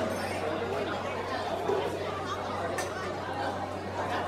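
Indistinct chatter of many guests in a large banquet hall, no single voice standing out, over a steady low hum.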